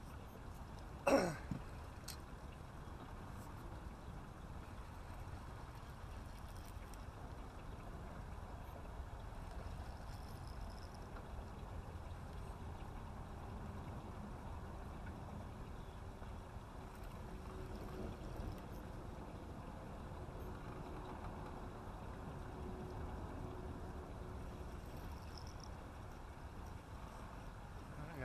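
Steady low wind and water noise around an open boat, broken about a second in by one short, sharp falling squeal.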